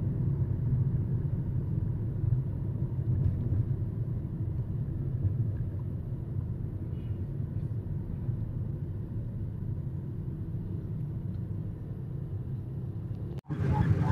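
Steady low rumble of a vehicle's engine and road noise heard from inside the cabin while driving through town traffic; it breaks off suddenly near the end.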